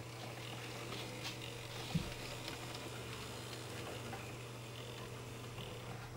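An N-scale model diesel locomotive running slowly along the track: faint light clicks over a steady low background hum, with one small knock about two seconds in.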